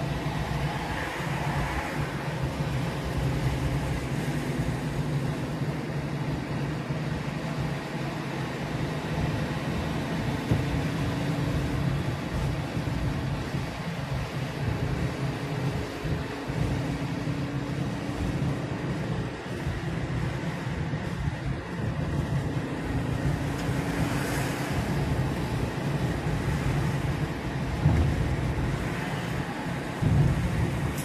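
Steady road noise heard from inside a car cruising on a motorway: a low engine and tyre hum, with a brief louder swell of hiss near the end.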